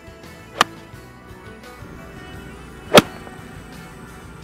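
Iron striking a golf ball on a punch shot: one sharp crack about three seconds in, the loudest sound. A fainter tap comes shortly after the start.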